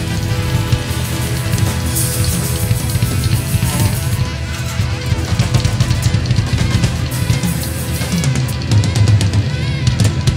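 Live rock band playing an instrumental passage, the drum kit loudest over bass and guitar, with a run of quick drum strokes in the second half.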